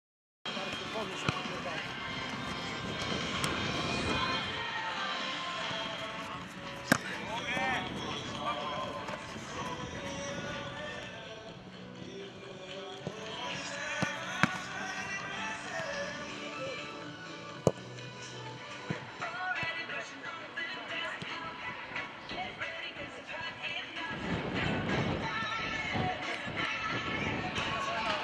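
Music with a voice in it, running continuously, with a few sharp knocks scattered through, the loudest about 18 seconds in.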